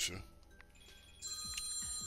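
A steady electronic ringing tone, several high pitches held together, starts about a second in and keeps going.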